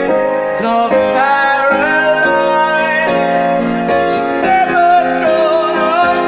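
Live pop song: a young man singing a high, wavering melody with piano accompaniment, heard from within a crowd.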